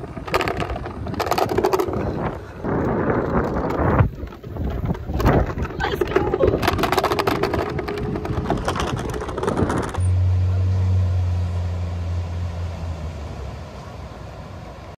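Wind rumbling on the microphone in uneven gusts outdoors for about ten seconds. Then a sudden cut to a steady low hum that slowly fades.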